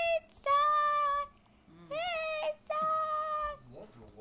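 A child singing high, long-held notes without clear words: several notes of under a second each, with short breaks between them.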